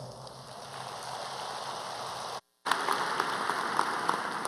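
Audience applauding in a large hall, a dense patter of clapping that grows louder partway through. It is cut by a brief total dropout a little past the middle.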